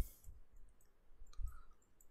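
Faint, scattered clicks and light taps from a computer mouse as a small mark is drawn on screen, with a short cluster about one and a half seconds in.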